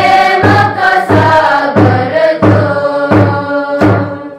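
A congregation singing a hymn together, with a large hand-held drum keeping a steady beat of about three strokes every two seconds.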